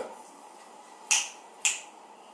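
Two short, sharp clicks about half a second apart, the first a little over a second in, over faint room hiss.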